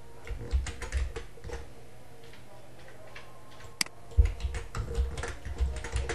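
Typing on a computer keyboard in two short bursts of quick keystrokes, one near the start and one in the second half, with a single sharp click between them.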